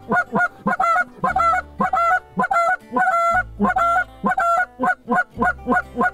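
Canada goose call blown by a hunter in a quick, rhythmic string of honks and clucks, about three to four a second, calling to incoming Canada geese.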